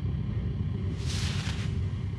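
Low, steady rumble of a train cab's soundtrack, with a brief burst of hiss about a second in.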